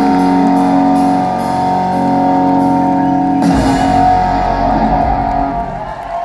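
Live amplified rock band with electric guitars holding long sustained notes. About three and a half seconds in, a sudden fuller hit comes in with heavy low end.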